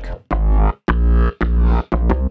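Synthesized FM bass from a ZynAddSubFX ADsynth patch playing a bassline: short, deep notes about every half second, each starting with a bright click-like blip. The blip comes from the modulator hitting full strength at note onset, which the patch's maker wants gone.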